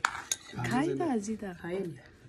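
Metal spoon clinking against a steel bowl of soup, a couple of sharp clinks near the start, with a person's voice talking over it.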